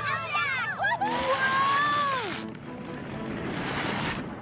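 A crowd of cartoon voices cheering and laughing together over background music, with one long drawn-out cheer about a second in; the cheering trails off toward the end.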